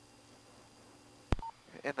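Police radio keying up: a sharp click about a second in, followed at once by a short beep, then a voice starts over the radio. Before it there is only a faint steady hum.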